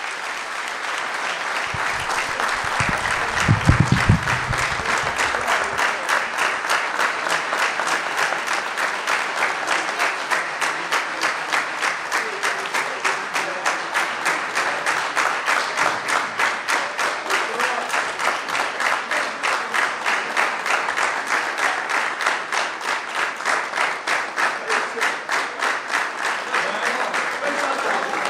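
A hall full of people applauding a round of applause. After a few seconds the clapping settles into a steady rhythm in unison. A voice calls out briefly about three to four seconds in.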